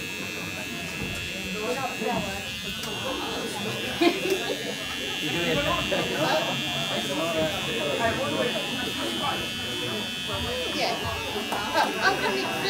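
Electric hair clippers buzzing steadily as they shave a boy's head, with chatter from people in the room underneath.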